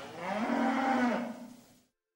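A single long cow moo that rises at the start, holds steady, then falls and fades out near the end.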